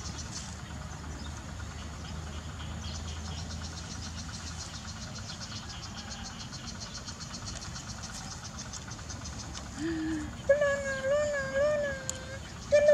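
Insects chirring in a steady fast pulse, over a low hum in the first few seconds. Near the end, a baby macaque gives loud, wavering, pitched cries that rise and fall several times.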